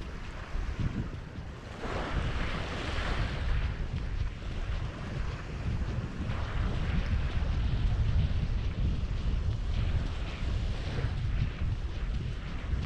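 Wind buffeting the microphone in a low, gusty rumble, over small waves washing onto a sandy shore, with a louder wash of surf about two seconds in.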